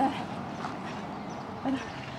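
A short human vocal sound, a low murmur about one and a half seconds in, over a quiet outdoor background.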